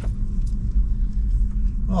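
Steady low road rumble inside the cabin of a BMW i3s electric car on the move, with a faint click about half a second in. Speech begins near the end.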